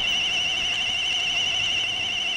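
A high, warbling electronic tone held steadily, a suspense sound effect on a film soundtrack.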